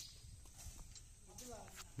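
Quiet outdoor ambience with faint voices of people nearby, a short stretch of talk near the end, and a few light knocks.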